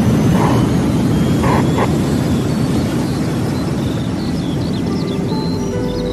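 Intro music for a radio show: a dense low rumbling swell that slowly fades, with bird chirps coming in over the last couple of seconds.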